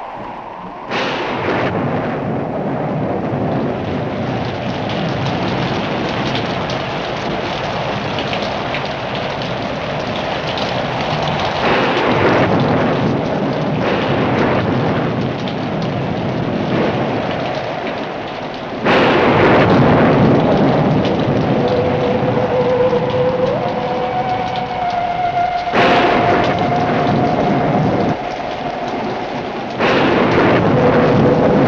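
Thunderstorm on a film soundtrack: heavy steady rain with four loud thunder crashes, the first about a second in and the rest roughly every seven seconds.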